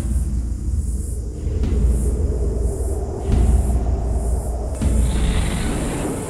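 Dark cinematic score with a deep rumbling low end and a swelling hit about every second and a half.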